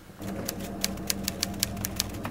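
Typewriter key clicks, a quick run of sharp taps about five or six a second, used as a sound effect for text being typed out, over a low steady room hum.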